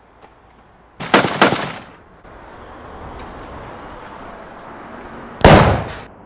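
Gunshots: two in quick succession about a second in, then a single shot near the end, each with a short echoing tail.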